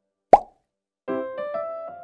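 A single short plop about a third of a second in, the loudest sound, as the plastic egg holding the fish comes open. About a second in, light children's keyboard music begins.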